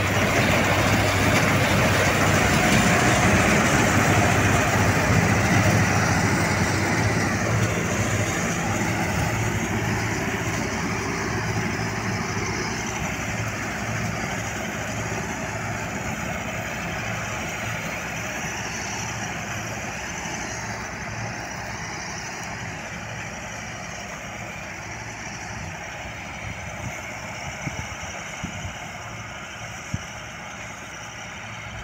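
Combine harvester's engine and threshing machinery running steadily as it cuts wheat. It is loudest close by in the first few seconds, then fades slowly as it drives away.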